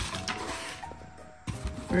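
Background music with held notes that step up in pitch midway, over soft rustling and handling of a cardboard box and plastic air-pillow packing.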